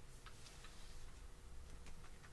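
A few faint, irregularly spaced light ticks from a sheet of paper being handled and slid on a tabletop, over low room hum.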